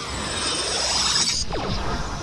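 Electronic whooshing sound effects from a Kamen Rider transformation-belt sequence: a rising, hissing sweep that cuts off suddenly about one and a half seconds in, followed by a few quick falling swoops.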